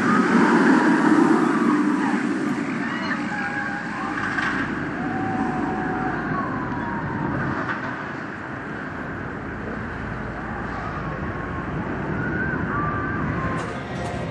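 Steel roller coaster train of a B&M hyper coaster running along its track: a steady rumbling roar, loudest in the first couple of seconds and then easing off.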